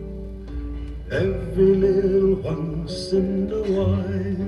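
A live folk recording playing from a vinyl LP through a mono Denon DL-102 cartridge and a hi-fi loudspeaker, picked up in the room: acoustic guitar accompaniment with held voices in a short passage between sung lines.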